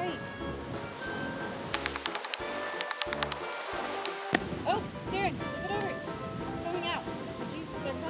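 Background music, with a quick run of sharp knocks about two seconds in that lasts about two seconds: a machete hacking at the fibrous husk of a coconut.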